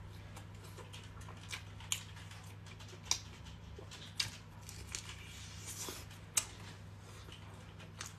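Close-miked eating: biting into and chewing a grilled sausage, with about five sharp snaps and clicks of the bites and mouth. A steady low hum runs under it.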